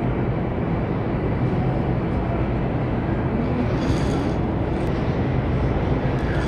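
Steady low rumble and hiss of grocery-store background noise.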